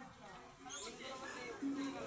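Faint background voices: scattered chatter from people in the street, with no one speaking close up.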